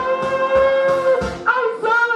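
A woman singing karaoke into a handheld microphone over a backing track with a steady beat: one long held note, then a new phrase about a second and a half in.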